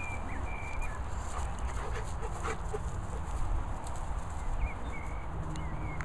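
Two dogs, an English Pointer and a Bernese Mountain Dog, play-fighting on grass, with soft dog vocal sounds and scuffling. A steady low rumble sits on the microphone, and a few short high chirps are heard.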